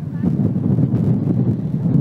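Wind buffeting the microphone in a light mountain breeze: a loud, uneven low rumble.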